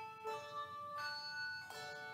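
Handbell choir playing: bells rung in turn, each note ringing on as new ones are struck about every three quarters of a second.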